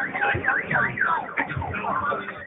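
Car alarm siren sounding, a fast warbling sweep that rises and falls about four times a second.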